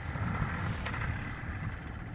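Wind buffeting the microphone: an uneven low rumble with a faint hiss, and one small click about a second in.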